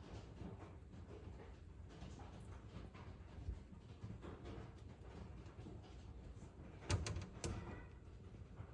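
Faint handling noise, then two sharp knocks about half a second apart near the end.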